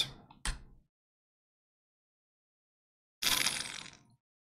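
Silence from a gated microphone, with a short thump half a second in. About three seconds in comes a brief hissing noise close to the microphone, fading out within a second, as a drink is sipped from a bottle.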